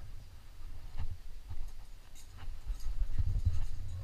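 A climber moving on rock: a few faint scrapes and clicks of hands on the holds, over low rumbling handling noise on the body-mounted camera that grows louder near the end.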